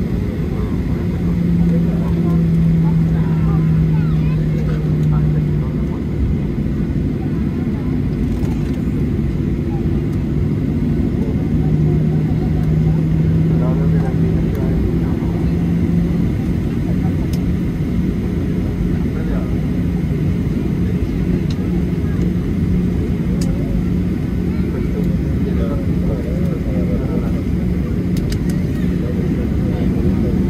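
Boeing 737-800's CFM56-7B jet engines at low taxi power, heard inside the cabin: a steady low hum with a couple of engine tones that shift slightly in pitch, over a low rumble as the airliner rolls along the taxiway and runway.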